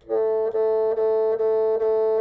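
A bassoon playing one note over and over above the bass clef staff, tongued about twice a second so the tone breaks briefly between strokes, with a flick on each repeated note. About five notes sound.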